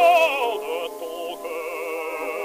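Tenor singing an opera aria in French with wide vibrato, from a 1923 acoustic-era 78 rpm record. A loud held note breaks off and slides down about half a second in, and the voice goes on more softly on lower notes. The sound is thin, with no bass and little top, as on pre-electrical recordings.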